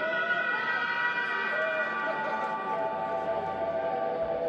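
Live psychedelic rock band playing a droning passage: held keyboard and electric guitar tones stacked on top of each other, some of them sliding slowly up and down in pitch, with no clear drum strikes.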